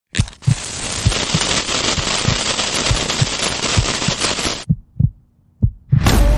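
Intro sound effect: a loud hiss with low, regular thumps about twice a second that cuts off suddenly near the end, followed by a few single thumps.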